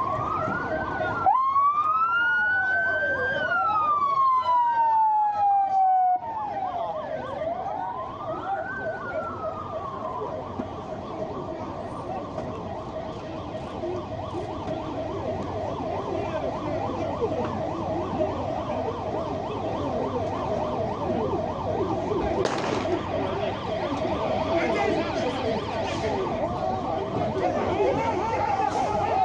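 Vehicle siren wailing, its pitch sweeping up and down, with two wails overlapping for several seconds. After about ten seconds it settles into a steadier tone over outdoor noise, with a few sharp knocks near the end.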